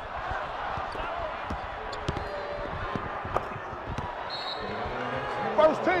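A basketball being dribbled on a hardwood court, with sharp bounces at uneven intervals over steady arena crowd noise.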